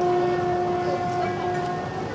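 A train horn sounding one long, steady note, cutting off just before the end.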